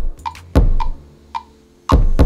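Kick drum sample from the GarageBand iOS sampler playing back a freshly recorded, quantized kick pattern: deep hits about half a second in and again near the end, each ringing out briefly. Light short clicks fall between the hits.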